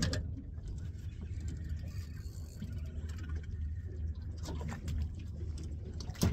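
Boat's engine idling with a steady low rumble, with a few faint knocks near the end.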